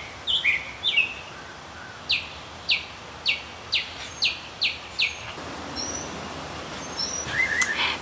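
A bird singing: a few chirps near the start, then a run of about seven quick downward-slurred notes, roughly two a second, followed by fainter, higher chirps.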